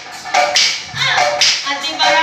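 Assamese nagara naam devotional singing: a group of voices chanting together with sharp percussion beats about a second apart.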